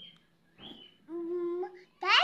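A young child's voice humming one steady, level note for just under a second, after a short vocal sound.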